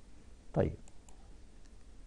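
A few faint, separate clicks of a computer mouse.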